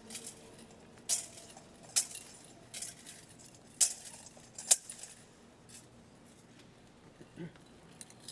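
Metal thurible swung to incense the Gospel book, its chains chinking against the censer with each swing: about five sharp clinks roughly a second apart, then fainter ones.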